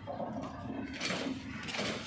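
Running noise of a slowly moving train heard from aboard: a steady rumble with rattling, and two brief louder noisy swells, about a second in and near the end.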